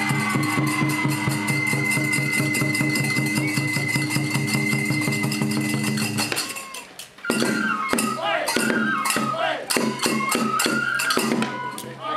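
Kagura festival music from drum and accompanying instruments, keeping a steady rhythm. It stops about six and a half seconds in. Voices then call out over sparser playing until near the end.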